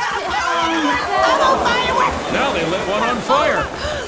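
Women shouting and shrieking in alarm, "Oh, my God! I'm on fire!", over the steady hiss of a wall of stage pyrotechnic sparks.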